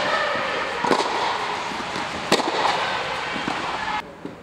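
Tennis balls struck by rackets in a rally on an indoor court under an inflatable dome: sharp pops, the loudest about a second in and again past two seconds, with fainter knocks between, over a steady hall hum.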